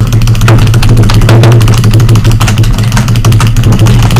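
Very loud, bass-heavy music with dense drumming that cuts in suddenly, much louder than the narration around it.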